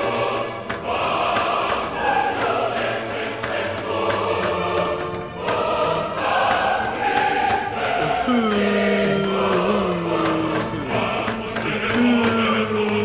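Dramatic choral soundtrack music: a choir singing over sharp, regular percussive ticks. About two-thirds of the way through, long held low notes slide downward in pitch.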